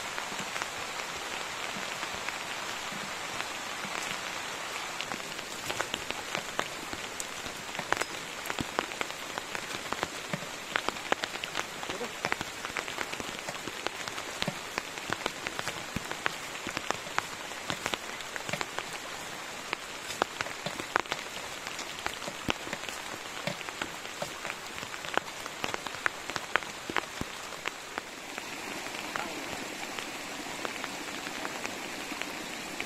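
Steady rain falling, with many sharp individual drops ticking close by throughout.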